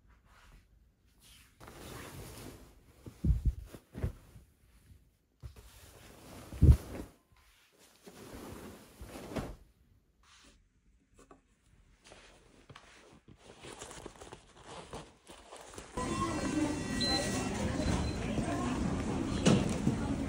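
Bedding rustling as a white duvet is handled, with a few soft thumps. About four-fifths of the way in, a cut brings the steady noise of a subway platform and train, with voices, as someone steps aboard.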